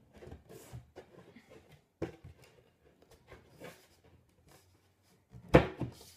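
Light scraping and small knocks of wood on wood as a footstool's wooden base panel is slid into the grooves of its side supports, with one sharper knock about two seconds in.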